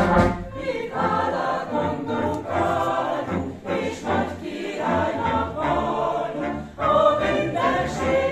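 Mixed choir singing, accompanied by a wind band. There are short breaks between phrases, and a louder entry comes near the end.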